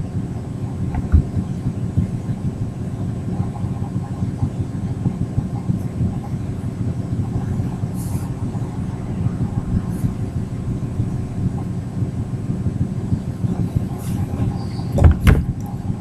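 Steady low rumbling noise with no clear pitch, with faint scattered clicks and two loud knocks about a second before the end.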